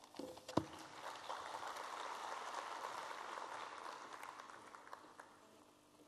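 Light audience applause with a dense patter of claps that swells about a second in and fades out near the end, preceded by a single sharp knock.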